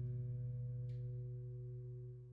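Last chord of a guitar ringing out, a steady held chord fading away evenly at the close of a jazz tune.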